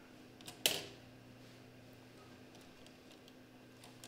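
Two small clicks from handling hardware at a CPU socket, about half a second in, the second louder. After them a steady low hum and faint ticks of handling.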